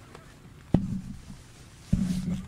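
Two sharp thumps about a second apart, each louder than the commentary and each trailing a brief low boom: knocks or handling close to the microphone.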